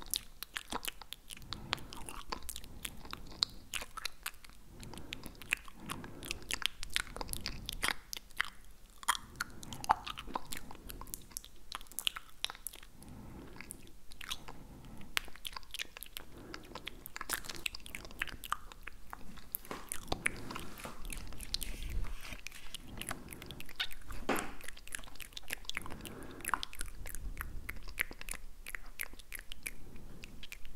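Tongue clicks and wet mouth sounds made right against a foam-covered handheld recorder microphone: a dense, continuous run of sharp clicks and smacks.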